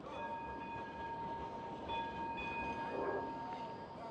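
A Blackpool tram on the street track, with a steady high ringing tone in several pitches lasting about four seconds. The upper pitches drop out briefly partway through.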